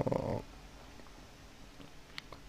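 A man's short breathy sound at the very start, then a pause of quiet room tone with a few faint clicks.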